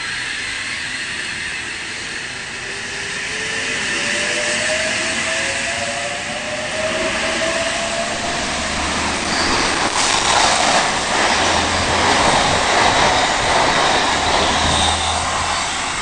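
Double-deck H-set (OSCAR) electric train pulling away from the platform. Its traction motors give a whine that rises in pitch as it accelerates over the first several seconds. Then louder wheel and running noise follows as the carriages pass close by.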